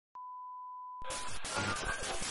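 A steady, high, pure beep like a test tone for about a second, cut off by a dense hiss of TV static.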